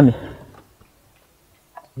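A voice finishing a word, then a near-silent pause with a few faint short ticks, and the voice resuming at the end.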